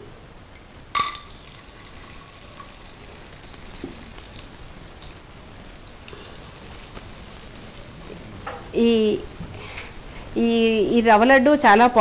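Raisins sizzling in hot fat in a frying pan. The sizzle starts suddenly about a second in as they hit the pan, then carries on as a steady hiss.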